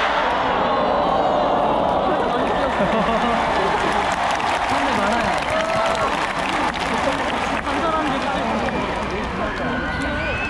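Large stadium concert crowd cheering and calling out, many voices overlapping in a steady din.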